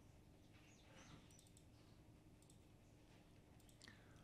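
Near silence: faint room tone with a few soft computer-mouse clicks, the last of them near the end.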